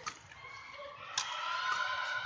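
Badminton rally: a racket strikes the shuttlecock sharply near the start and again about a second later. The second hit is followed by a held, high-pitched squeal.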